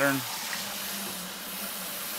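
Water spraying steadily from a firehose-style nozzle on a stainless braided bucket-filler hose into a 5-gallon bucket, filling it.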